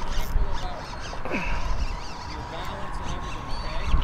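Wind buffeting the microphone as a steady low rumble, with faint voices and a faint steady high tone underneath.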